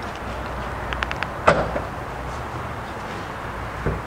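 Steady low room hum with a few light clicks about a second in, then one sharp knock about a second and a half in.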